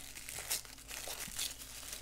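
Tissue paper crinkling in short rustles as a wrapped pen is unwrapped by hand. The sharpest crinkles come about half a second in and again a little after a second and a half.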